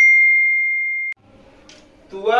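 A single ding sound effect: one clear, bell-like tone that fades slowly and cuts off abruptly about a second in, followed by faint room noise.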